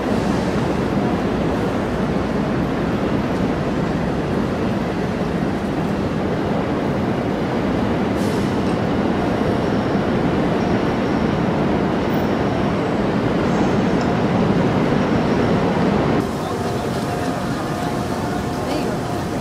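Steady outdoor city ambience: a dense wash of crowd murmur and traffic noise, dropping slightly and changing in tone abruptly about sixteen seconds in.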